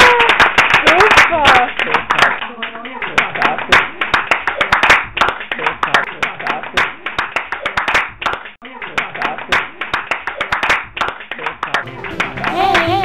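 A crowd clapping continuously, with cheering voices and whoops in the first second or two.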